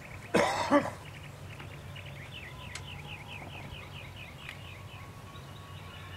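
A cough: two quick, loud bursts about half a second in.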